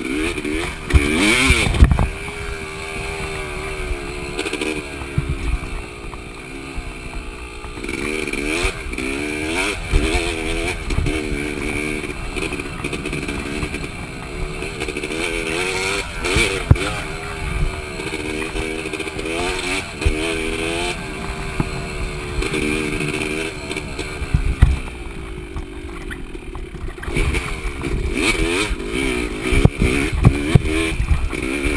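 2005 Yamaha YZ250 two-stroke dirt bike engine under way, its pitch rising and falling again and again as the throttle is worked. Knocks and rattles from the bike over rough ground come through now and then.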